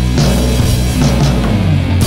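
Heavy stoner/doom rock played by a band on fuzzed electric guitar, bass and drum kit, with cymbal hits through the riff. A new sustained chord is struck at the very end.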